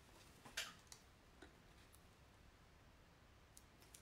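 Near silence, with a few faint clicks and rustles from a vinyl silk screen transfer sheet being handled, mostly in the first second and a half.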